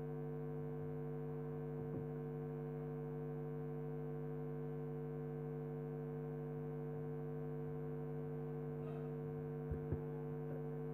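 Steady electrical mains hum from a lecture hall's PA system through the open podium microphone: an unchanging low buzz made of several steady tones. A couple of faint knocks come near the end.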